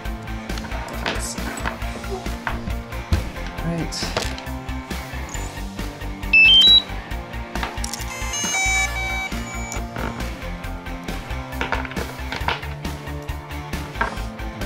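Background music with a steady beat runs throughout. About five and a half seconds in comes a short run of four rising electronic beeps, the last one the loudest, which fits a DJI Mavic Pro's power-on chime as the drone boots after its gimbal ribbon cable repair.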